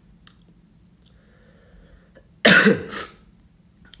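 A man with a head cold coughs once, loudly, about two and a half seconds in, after a faint breath. The cold has brought a runny nose and phlegm.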